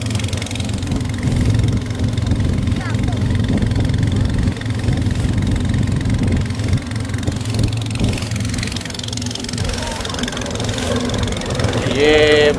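Small passenger boat's engine running steadily while under way, with a constant hiss of wind and water over it.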